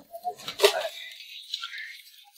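Clear plastic fruit packaging crinkling and knocking as a box of oranges is handled, with a few sharp crackles in the first second and then a fainter rustle.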